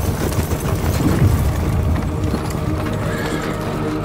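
Galloping hooves of a horse team pulling a stagecoach, dense low thudding strokes, under a film score whose steady sustained tones come forward in the second half.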